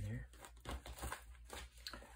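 Paper rustling and sliding as a card is pushed into a paper pocket of a handmade junk journal, followed by the journal's pages and cover being closed and handled, with faint scattered crinkles and small taps.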